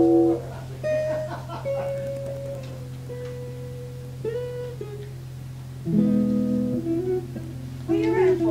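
Guitar played slowly in separate ringing single notes, with a louder low chord about six seconds in, over a steady low hum.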